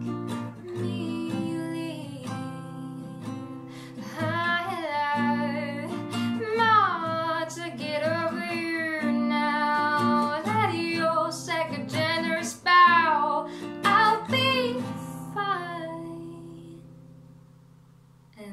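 A woman sings over an acoustic classical guitar, the guitar strummed and picked beneath the voice. The singing stops a few seconds before the end, and the last guitar chord rings on and fades away.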